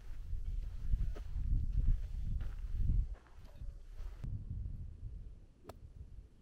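Wind gusting across the microphone, an uneven low rumble that is strongest in the first three seconds and then eases off, with a few faint clicks.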